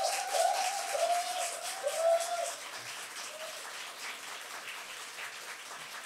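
A small studio audience applauding, with a run of short rising-and-falling tones sounding over the clapping in the first half; the applause fades after about three seconds into a faint steady hiss.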